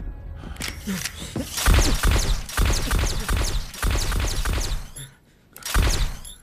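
Dramatic film score with a string of heavy thuds and crashes from a fistfight, the last hit near the end the loudest.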